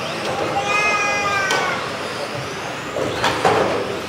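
Motors of radio-controlled touring cars racing round a track: a high whine that falls slightly in pitch as a car passes, about half a second to a second and a half in, with fainter whines from other cars after it.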